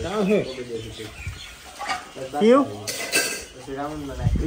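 Wordless voice sounds from the family group, including a quick rising squeal about two and a half seconds in. A brief clatter follows about three seconds in.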